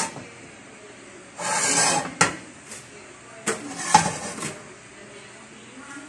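A large ceramic serving plate handled on a stove top. There is a short scrape about a second and a half in, then a few sharp knocks, the loudest about four seconds in.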